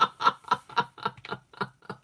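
A woman laughing: a long run of rhythmic "ha" bursts, about four a second, fading out about two seconds in.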